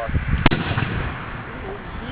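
A single sharp bang about half a second in: hydrogen gas in a 2-liter plastic soda bottle being ignited, the blast sending the bottle flying across the road.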